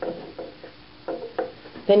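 Brass-whorled takli spindle spinning fast on its tip on a wooden tabletop: a faint steady whir with a few light taps.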